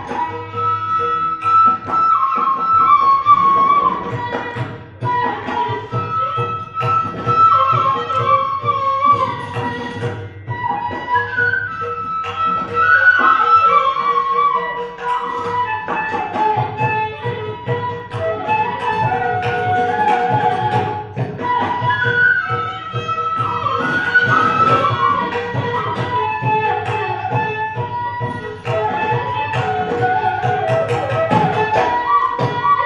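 Carnatic bamboo flute playing a melody in raga Anandabhairavi, with notes gliding and bending between held pitches. It plays over a steady drone and hand-drum accompaniment.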